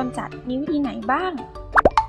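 A short cartoon 'plop' sound effect, a quick sweep in pitch, about three-quarters of the way through, over light children's-style background music and a high-pitched narrating voice.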